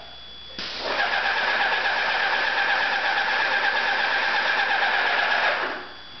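Airless paint spray gun spraying paint onto a wall: one steady hiss that starts suddenly about half a second in and tapers off just before the end, lasting about five seconds.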